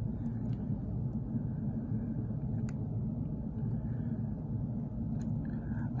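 Steady low background hum in a small room, with a few faint, short clicks from small fishing tackle (hook and rubber stoppers) being handled.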